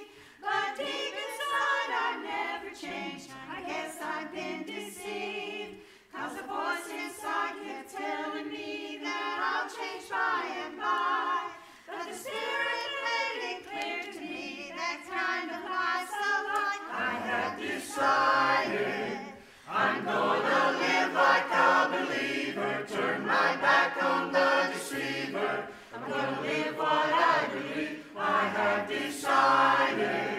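Mixed church choir singing a hymn, which swells fuller and louder in the second half as lower voices come in.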